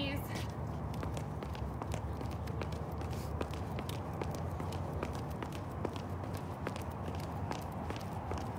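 Footfalls of people doing high knees: quick, repeated foot strikes on the ground, heard as a string of short taps over a steady low background.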